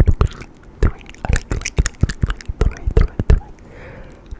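Close-miked ASMR trigger sounds: irregular sharp clicks and taps, about three or four a second, several with a low thud.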